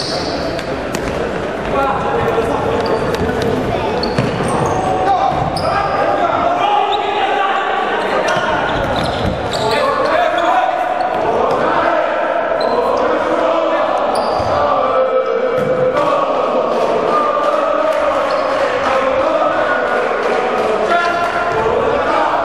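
Futsal ball being kicked and bouncing on a wooden sports-hall floor, repeated sharp thuds echoing in the hall, under nearly continuous voices.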